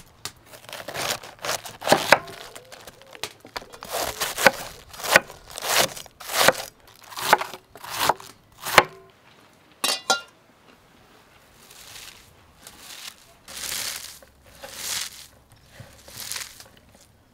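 Large kitchen knife slicing through a head of cabbage on a wooden cutting board, one cut about every half second to second for the first nine seconds. A single knock follows about ten seconds in, then shredded cabbage rustles as it is gathered up by hand.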